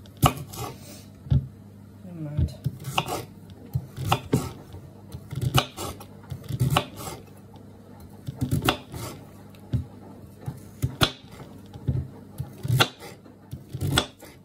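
Kitchen knife slicing sweet potato on a wooden chopping board: irregular sharp knocks of the blade striking the board, about one or two a second.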